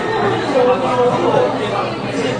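Restaurant chatter: several people talking at once around the dining room.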